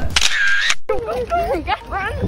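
A short, bright hissing burst of about half a second that cuts off abruptly, then girls talking.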